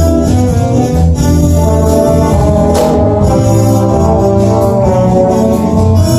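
Jazz big band playing a bossa nova tune, with trumpets over guitar and the rhythm section.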